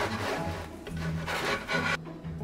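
Dry scraping and rubbing on a wooden board as a pizza is slid across it and handled, over soft background music.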